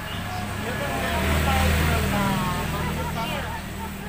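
A motorcycle engine passing close by, growing louder to a peak about a second and a half in and then fading away, with people talking over it.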